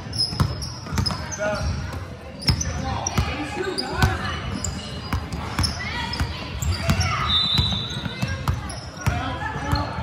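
A basketball dribbled on a hardwood gym floor: repeated echoing thuds at an uneven pace, with short sneaker squeaks and the voices of players and onlookers in the large hall.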